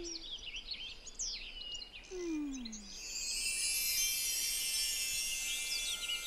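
Children's-TV sound effects: twittering bird chirps with two slow, falling whistle-like tones, then from about three seconds in a bright magical shimmer that rises and keeps building.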